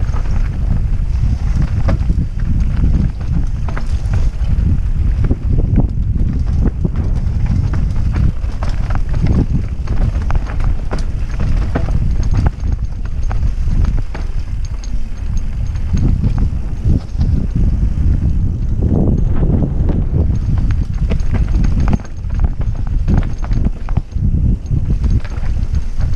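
Mountain bike descending a dirt trail: a continuous low rumble of tyres on dirt, with frequent knocks and rattles from the bike jolting over bumps and wind on the microphone.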